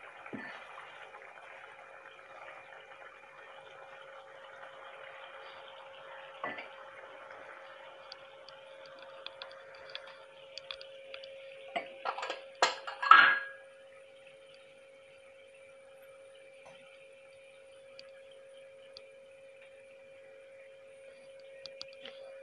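Dates pickle in oil and vinegar simmering gently in a pan, a faint bubbling and crackle over a steady hum. A few sharp knocks come about halfway through, the loudest sound here.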